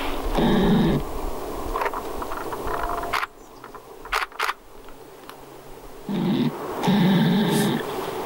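A flying insect buzzing in two spells, briefly near the start and again for a second or two near the end, with a quieter stretch between that holds a few sharp clicks.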